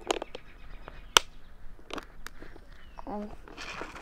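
Clear plastic tackle boxes being handled: a few sharp plastic clicks and knocks, the loudest about a second in, as one box is set down and another is lifted out of the soft tackle bag.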